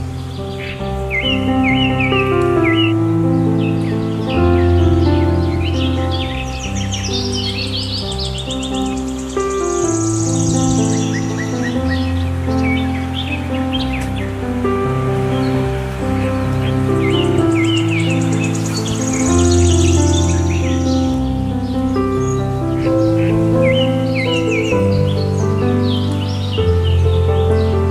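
Calm instrumental background music of slow, held notes, with bird chirps and trills mixed in above it.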